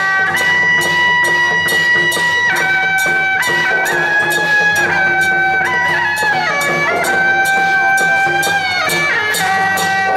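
Traditional Taiwanese procession music. A reed-pipe melody of long held notes steps up and down over a steady percussion beat of about two to three strikes a second.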